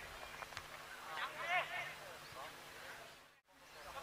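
Faint open-air football pitch ambience with distant shouting voices from players, strongest about a second in. The sound cuts out briefly near the end.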